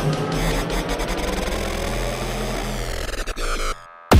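Hard techno breakdown: the kick drum drops out, leaving a dense, noisy synth texture over a low bass line. The music cuts away to a brief near-silent gap shortly before the end.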